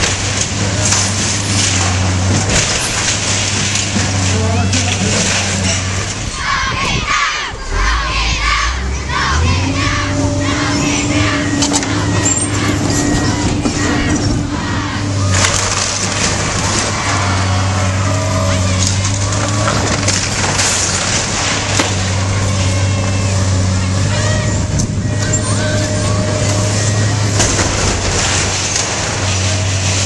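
Diesel hydraulic excavator running steadily, its engine note varying as the hydraulics work, while its demolition grab tears into a wooden building with corrugated metal roofing, giving repeated crunches of splintering timber and clatters of metal sheeting.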